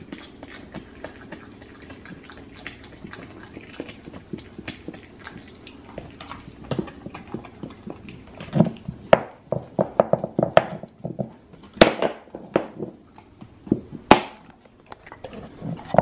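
A Great Dane gnawing a raw deer shank bone: irregular clicks and crunches of teeth on bone. The chewing is faint at first and grows louder and busier about halfway through, with two sharp cracks near the end.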